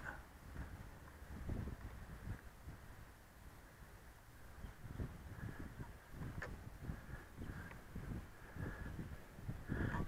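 Gusty wind buffeting the microphone: faint, uneven low rumbles that rise and fall.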